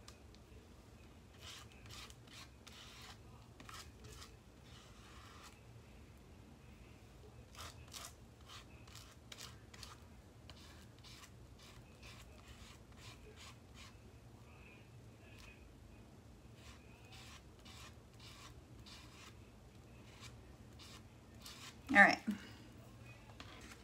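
Faint scratchy rubbing and dabbing of a hand and a foam paint sponge on a clear plastic stencil laid over foam board, in short irregular strokes. A brief louder sound right at the end.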